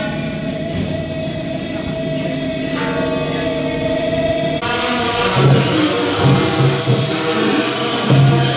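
Temple-procession music from a road-opening drum troupe: a long held, horn-like wind melody, joined a little after halfway by a brighter, fuller band sound with drum beats.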